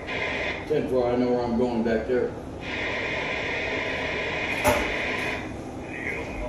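Two-way talk over a CB radio: a man's voice into the handset, then a thin, hissy radio transmission for about three seconds that is hard to make out, with a sharp click near the end.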